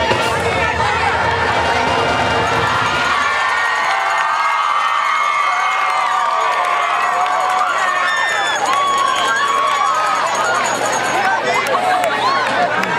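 A high school marching band playing, its low drums and brass stopping about three and a half seconds in. A crowd in the stands then cheers and talks.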